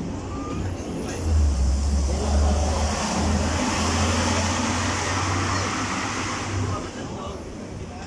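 A large road vehicle's engine rumbling deep and loud close by, starting about a second in, steady for several seconds, then fading before the end. Voices chat in the background.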